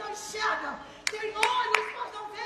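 Three sharp hand claps about a third of a second apart, starting about a second in, over people's voices.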